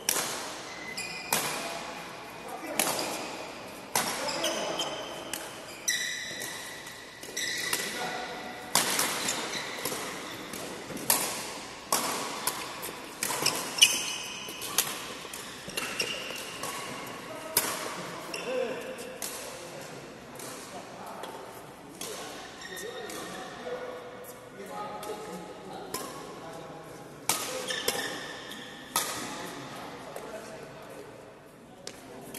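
Badminton rackets striking a shuttlecock back and forth in a doubles rally: a sharp hit about every second or so, each ringing briefly in a large hall.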